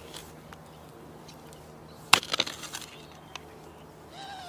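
Garden spade digging into crumbly, slightly stony soil: a sharp crunch about two seconds in, followed by a brief run of smaller crunches as the blade works through the earth.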